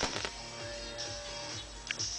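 Music playing through Philips SHE9550 in-ear earphones, with a steady beat, and a few sharp handling clicks near the start and just before the end.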